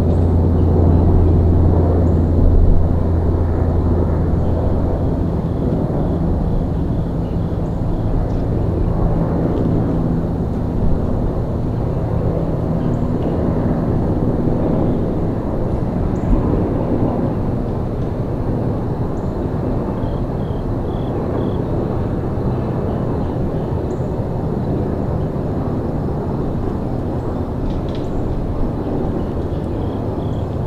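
A distant engine's low, steady drone that fades away over about fifteen seconds, leaving a low outdoor rumble.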